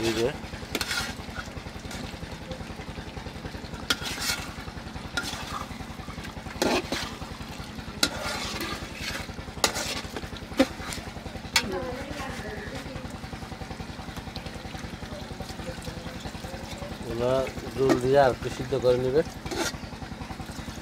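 A long metal spoon scraping and knocking against an aluminium pot as a thick curry is stirred, with the food sizzling steadily underneath. The scrapes come irregularly, a few clustered between about 4 and 12 seconds in.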